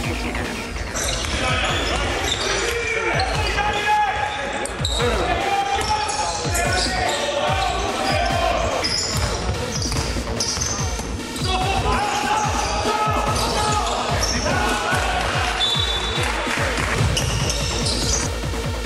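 Live basketball game sound in a sports hall: the ball bouncing on the wooden court, with players and spectators shouting.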